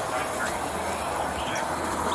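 Steady low engine rumble and hiss from idling vehicles, with faint voices in the background.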